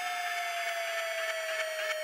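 A quiet break in an electronic pop track: the beat has dropped out, leaving a single held electronic tone that slowly slides down in pitch over a faint hiss.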